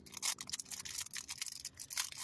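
Thin clear plastic packaging crinkling in a run of small, quick, irregular crackles as fingers pick it apart.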